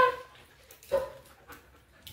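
A dog whining: a loud high yelp-like whine at the start and a shorter whine about a second in that trails off.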